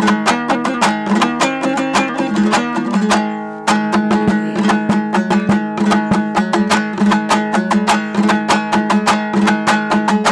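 Dambura, the Hazaragi two-stringed long-necked lute, strummed rapidly in an instrumental passage, with a steady low drone under the melody. The strumming briefly thins about three seconds in, then picks up again.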